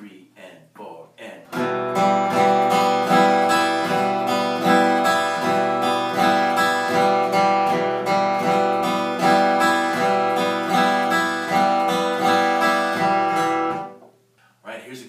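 Acoustic guitar flatpicked over an E minor chord, mixing downstrokes and upstrokes in a steady, even rhythm. The playing starts about a second and a half in, after the last of a spoken count-in, and stops right at the end.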